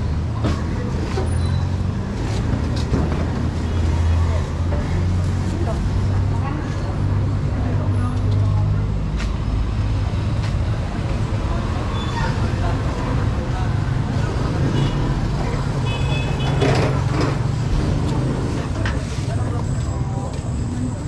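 Street traffic ambience: a motor vehicle engine running with a steady low hum that swells a little twice, amid background voices and odd clicks and knocks.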